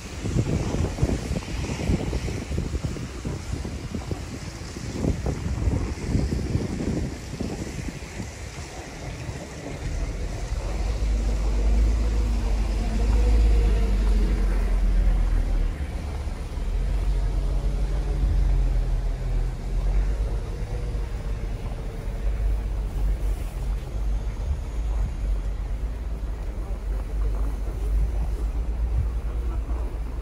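Snowy city street ambience: traffic on a slushy road with wind. From about ten seconds in, a heavy low rumble of wind buffeting the microphone takes over.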